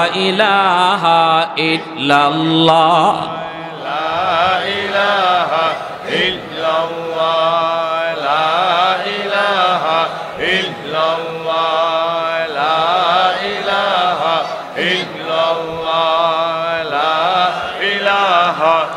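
Islamic zikr chanted aloud into a microphone: one short melodic phrase repeated over and over, about every two seconds.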